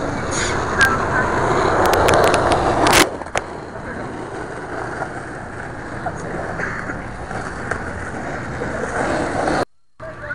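Skateboard wheels rolling on concrete, growing louder over the first few seconds with a few light clicks, then a single sharp clack of the board about three seconds in, after which the rolling sound falls away to a quieter steady background.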